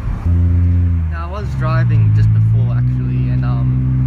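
A person singing long, low held notes that step up in pitch twice.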